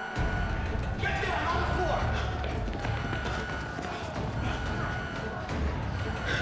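A dramatic action score with a heavy low pulse, starting abruptly, over the sharp hits and thuds of a close-quarters fistfight.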